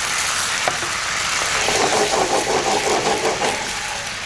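Penang curry paste sizzling in a hot nonstick frying pan as it is stirred with a wooden spatula, with coconut milk being added to it. The sizzle thickens into a coarser crackle for a couple of seconds in the middle.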